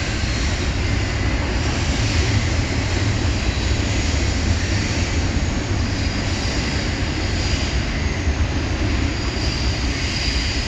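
Freight train of double-stacked container cars rolling steadily over a stone arch bridge: a continuous rumble of wheels on rail, heavy in the low end, without breaks.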